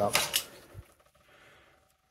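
A man's voice finishing a word, with a few short clicks, during the first half second. Then near silence: room tone.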